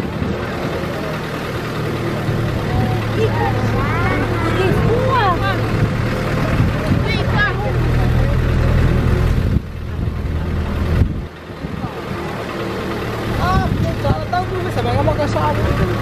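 A truck's engine running steadily at low speed, a low hum that dips briefly about ten seconds in. People's voices sound over it from about three to eight seconds in and again near the end.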